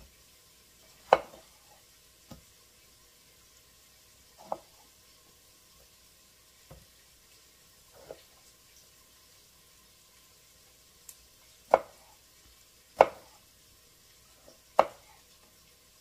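Chef's knife chopping Roma tomatoes on a wooden cutting board: single knocks of the blade on the board, a second or two apart. The loudest is about a second in, and three come close together near the end.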